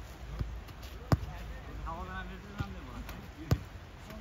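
A football kicked back and forth on grass: four sharp thuds of a boot striking the ball, the loudest about a second in and near the end. A voice calls out briefly in the middle.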